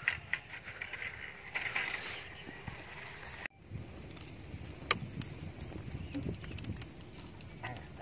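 Bamboo and wooden poles knocking and scraping as they are handled, then, after a sudden cut, a log fire crackling with scattered sharp pops over a low rumble.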